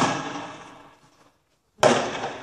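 Two loud bangs from riot-control weapons fired at protesters, nearly two seconds apart, each echoing and fading away over about a second.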